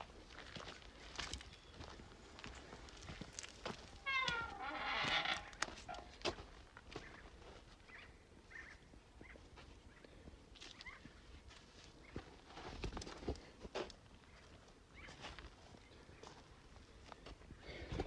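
Footsteps and handling on dry dirt and leaf litter, with one animal call lasting about a second and a half about four seconds in.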